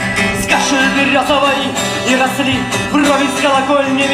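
Live music: the instrumental introduction to a song, played on stage with melodic lines over a steady accompaniment.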